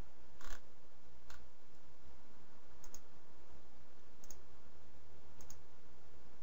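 Computer mouse clicking five times, several of them quick double clicks, spaced a second or more apart over a steady low background hum.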